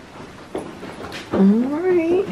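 A few faint knocks, then a person's drawn-out vocal sound that wavers and rises in pitch from a little past halfway; this is the loudest sound.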